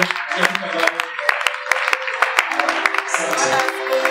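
Music with voices, crossed by many sharp, irregular hand claps.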